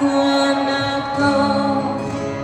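Live concert music: a sustained chord held steady, with a lower note joining about a second in.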